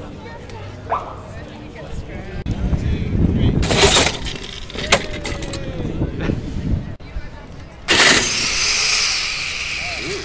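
Power-tool drag racer's electric motor running loudly with a high whine that rises and falls, starting about eight seconds in. A short loud burst of the same kind of noise comes about four seconds in, over crowd chatter.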